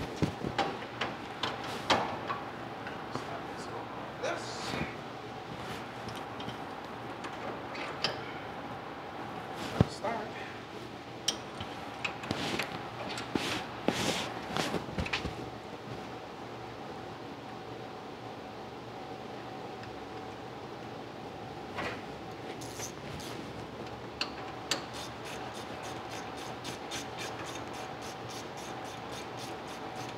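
Scattered clicks and knocks of tools and metal parts being handled, over a steady hum. Near the end comes a quick, even run of ticks.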